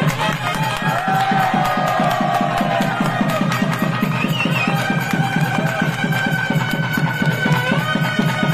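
Traditional South Indian wedding music: a nadaswaram-like reed pipe plays held and gliding melody lines over fast, even thavil-style drumming.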